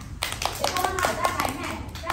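A group of small children and their teacher clapping their hands: a quick, uneven run of claps lasting about a second and a half, with a few children's voices mixed in.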